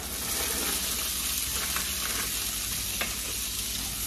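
Frozen whole kernel corn hitting hot melted butter in a cast iron skillet, sizzling steadily from the moment it goes in. A few light clicks sound over the sizzle as it is stirred.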